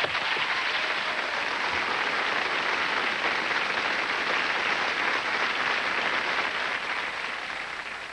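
Studio audience applauding, a steady clatter of many hands that eases off a little near the end.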